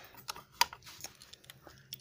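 A handful of light clicks and taps of small hard plastic toys being handled.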